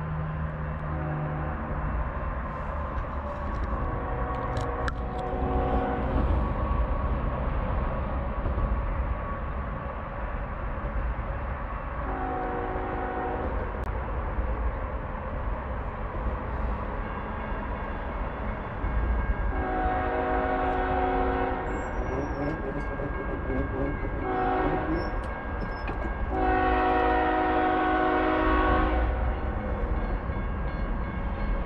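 Horn of an approaching BNSF diesel freight locomotive, a chord of several steady tones, sounded in a series of blasts; the last three go long, short, long. A steady low rumble of the oncoming train runs underneath.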